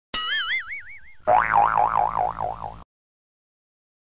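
Cartoon 'boing' sound effect: a high wobbling tone, then about a second and a quarter in a lower, louder wobbling boing that cuts off suddenly just before three seconds.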